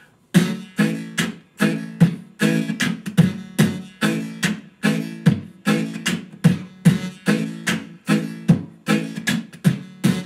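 Harpboxing: beatboxing through a harmonica held against a handheld dynamic microphone, so each beat also sounds a chord on the harmonica reeds. A steady rhythm of sharp, chugging hits, about two to three a second, starts just after the beginning.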